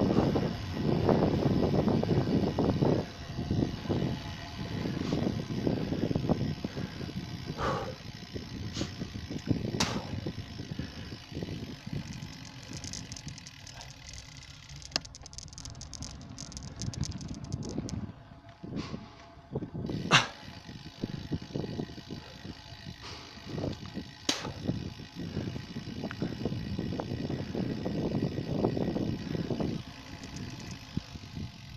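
Wind buffeting the microphone and tyre noise from a bicycle rolling along an asphalt road, loudest in the first few seconds, with a few sharp clicks along the way.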